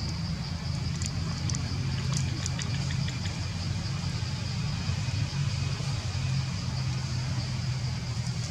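A steady low engine-like hum, with a thin steady high tone above it and a few faint ticks.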